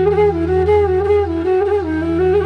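Background music: a flute playing a slow melody that steps up and down in short notes over a low, steady drone.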